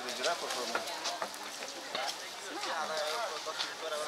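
Several people talking in the background, with no clear words, and a few sharp clicks scattered through.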